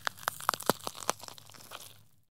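Rapid, irregular crackling clicks over a low steady hum, thickest about halfway through and thinning out near the end: an outro sound effect under the end card.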